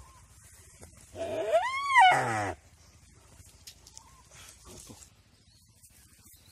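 A deer giving one loud distress bleat about a second in, lasting about a second and a half, its pitch rising and then falling. It is the cry of a live deer being bitten and eaten by a Komodo dragon.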